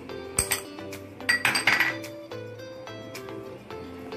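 A metal spoon clinking and scraping against bowls several times, busiest in the middle, as gram flour is tipped and scraped from one bowl into another, over soft background music.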